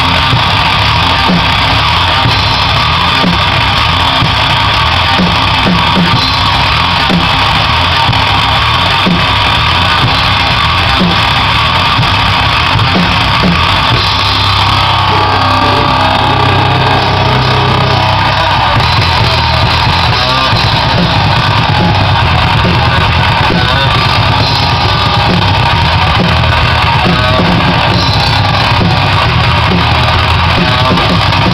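A metal-punk band playing live: loud electric guitar and a drum kit with crashing cymbals. The riff changes about halfway through.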